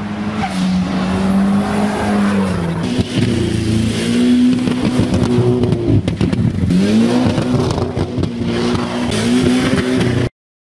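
Second-generation Mitsubishi Eclipse's four-cylinder engine held at high revs while the car slides on a dirt and grass field. The revs dip and climb again several times, over the rough noise of the tyres throwing up dirt.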